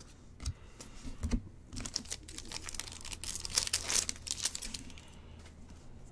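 Wrapper of a 2022 Bowman baseball card pack being torn open and crinkled: a dense crackling run starting about two seconds in and lasting two to three seconds, after a few light clicks of cards being handled.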